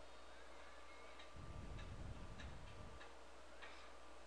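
Faint room tone with light, irregular ticks, a few every second or so.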